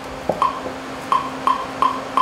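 Short, evenly spaced clicks, roughly three a second, a count-in on the playback track after the cue to start the music.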